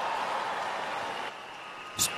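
A large congregation reacting together: a wash of crowd noise that peaks at the start and drops away after about a second and a half.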